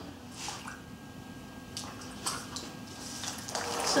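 Electric potter's wheel spinning with a faint steady motor hum, with a few soft wet drips and squishes of water on clay. The wet noise grows toward the end as wet hands begin pressing the lump of stoneware to center it.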